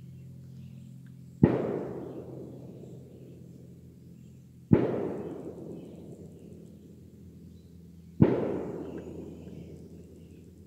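Three loud, sharp bangs, about three and a half seconds apart, each echoing away over about two seconds.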